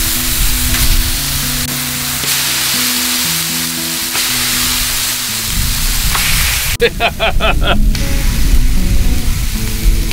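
Bison ribeye steaks sizzling steadily as they sear on a blazing hot Blackstone flat-top griddle, with background music playing underneath.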